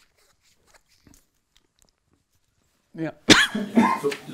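Near silence with a few faint clicks, then about three seconds in a man gives a loud cough, followed by the start of speech.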